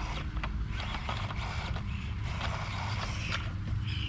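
Axial SCX24 1/24-scale RC crawler's small electric motor and gears whirring in short on-off bursts as it crawls up onto a wooden board, with a few sharp clicks, over a steady low rumble.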